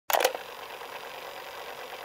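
A tape machine starting up: two sharp clicks right at the start, then the steady hiss and whir of tape running.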